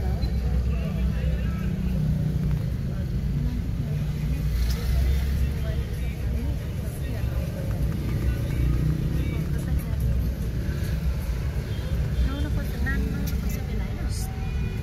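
Steady low rumble of a car's engine and tyres, heard from inside the cabin while riding.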